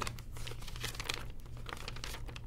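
Folded paper instruction leaflets rustling and crinkling as they are handled and opened, in a string of small irregular crackles.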